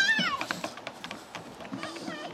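A child's high-pitched squeal, about half a second long, rising and then falling at the very start. It is followed by quick footfalls of children running on a wooden boardwalk.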